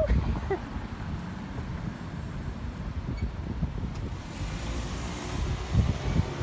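Steady low rumble of street traffic, with wind on the microphone.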